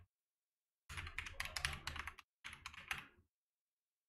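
Typing on a computer keyboard: a run of quick keystrokes starting about a second in, a brief pause, then a shorter run.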